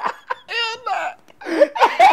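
Two men laughing hard. About half a second in comes a high-pitched, wavering squeal of laughter, then a brief lull before the laughing picks up again near the end.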